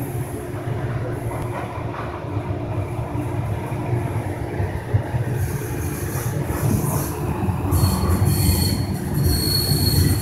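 Train running along the track, heard from on board: a steady low rumble, joined about eight seconds in by a steady high-pitched squeal.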